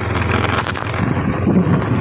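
Motorcycle engine running steadily while riding, with wind rushing over the microphone.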